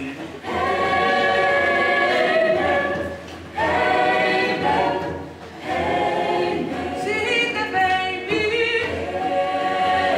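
Mixed choir singing unaccompanied, in sung phrases broken by short breaths, about a second, three and a half and five and a half seconds in.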